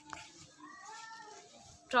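A short click just after the start, then a faint high-pitched drawn-out call lasting about a second that rises and falls gently.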